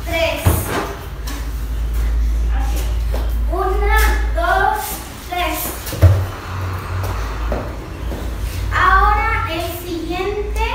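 A girl's voice speaking in short bursts, with two dull thumps, one about half a second in and a louder one about six seconds in, over a steady low rumble.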